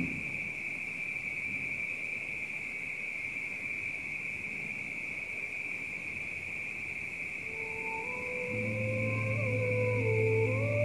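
Steady high-pitched chorus of night insects, such as crickets. About seven and a half seconds in, slow background music fades in: long held electronic melody notes over a low steady note.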